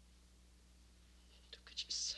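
Quiet room tone with a low steady hum, then near the end a few soft clicks and a short breathy, whispered voice.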